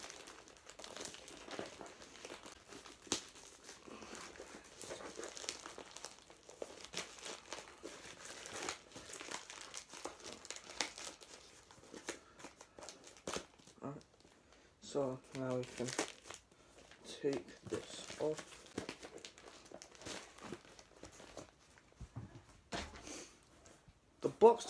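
A plastic mailing bag being torn open and handled by hand: dense crinkling and tearing crackles, busiest in the first half, then sparser handling. A little muttered voice comes in briefly around the middle.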